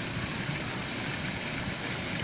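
Steady wash of moving water in a koi pond, its surface stirred by a crowd of koi.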